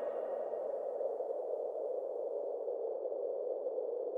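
A steady, muffled rushing drone with a faint thin high whine above it: the quiet tail of the edit's soundtrack after the song has ended.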